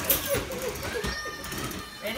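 Indistinct voices of several people talking in a room, with a short click right at the start.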